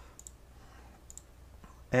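A few faint, sharp computer clicks, several close together in the first half and one more a little past the middle, over a low steady hum.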